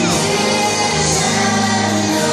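Children's choir singing a song together over instrumental accompaniment with a steady bass line.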